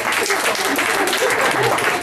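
Audience applauding, a dense run of clapping from many hands, with some voices mixed in.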